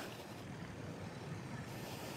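Faint, steady riding noise of a fat-tyre electric bike rolling over a sandy dirt trail, with light wind on the microphone.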